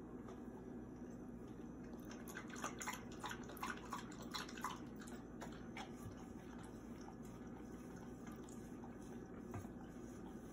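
Blue Heeler licking and lapping at a stainless steel food bowl: quick runs of tongue clicks against the metal, busiest in the first half and then only now and then.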